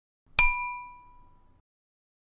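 A single bright, bell-like ding, struck once and ringing out over about a second, its lowest tone lasting longest: a synthetic chime used as a logo-reveal sound effect.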